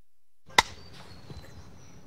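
Dead silence, then about half a second in a single sharp, loud clap of a film clapperboard marking the start of a take. Faint outdoor background follows.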